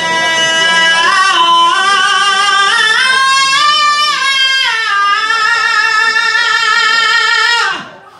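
A woman singing one long held note, climbing in steps to a peak three to four seconds in, then sliding back down and holding until it stops shortly before the end.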